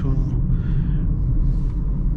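Steady low in-cabin rumble of a 2018 Toyota Corolla 1.6-litre driving along at a constant speed: engine and road noise heard from inside the car.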